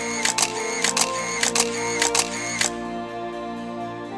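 A quick run of camera shutter clicks, about a dozen and often in pairs, stopping a little over halfway through. Soft background music with held tones plays under them.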